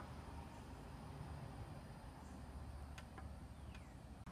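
Faint room tone: a low steady hum and faint hiss, with a couple of faint clicks about three seconds in and near the end.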